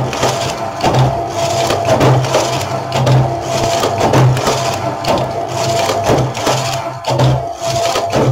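Domestic knitting machine carriage being pushed back and forth along the needle bed, knitting row after row in a continuous mechanical clatter that swells and fades about once a second with each pass.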